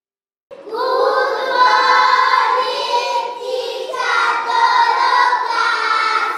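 A group of young children singing a song together, starting about half a second in.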